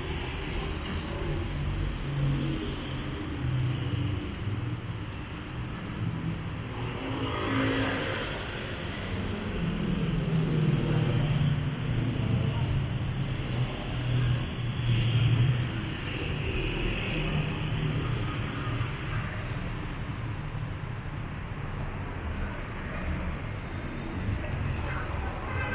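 City street traffic: cars passing on the road beside the sidewalk, a steady low rumble that grows louder for a few seconds past the middle.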